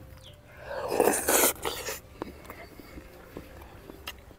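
A person's loud, breathy exhale of a little over a second, about a second in: a reaction to the chili heat of the food. A few light clicks follow.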